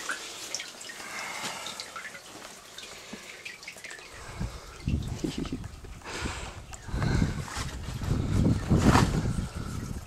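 Water dripping and trickling at the edge of the lake ice. From about four seconds in, louder irregular low rumbling and knocks come in bursts.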